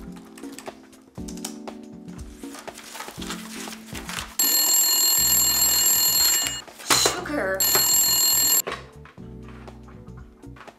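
Desk telephone bell ringing: one long ring of about two seconds, then a shorter ring about a second later, over background music.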